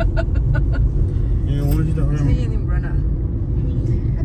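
Inside a moving car: the steady low rumble of engine and road noise, with voices talking over it. A quick run of short ticks sounds in the first second.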